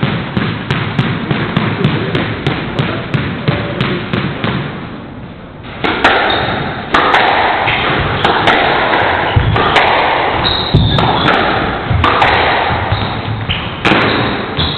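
A squash ball bounced with the racket about three times a second, then a short lull. From about six seconds in comes a rally: irregular sharp hits of racket on ball and ball off the court walls, ringing in the hall, with short high squeaks of sneakers on the wooden floor.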